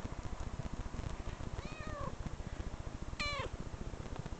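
A cat meowing twice: a drawn-out arching meow about a second and a half in, then a shorter, brighter meow that falls in pitch near the end, over a steady low rumble.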